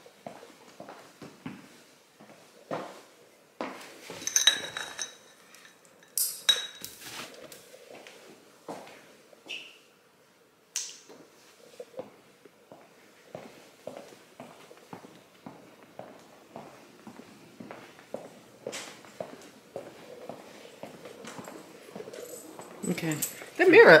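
Footsteps on a hard floor at an even walking pace, mixed with knocks from a handheld camera, and a few light metallic clinks with a short ring about four and six seconds in. A woman starts talking near the end.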